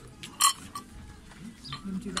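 Twist-off lid being unscrewed from a small glass jar, with one sharp click about half a second in.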